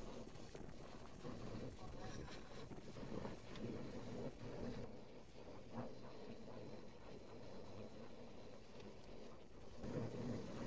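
Low, steady road and engine noise of a car climbing a mountain road, heard inside the cabin, with a few faint ticks.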